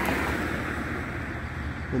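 Steady low engine rumble with an even hiss over it, from a motor vehicle running.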